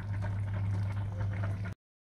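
Sauce with mussels and shrimp bubbling and crackling in a frying pan, still simmering on retained heat just after the burner was switched off, over a steady low hum. The sound cuts off abruptly near the end.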